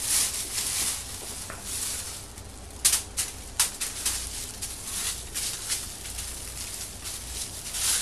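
Clear plastic bag rustling and crinkling under hands pressing and smoothing it, with sharper crackles about three seconds in. The bag holds freshly mixed foam-in-place solution that is starting to expand.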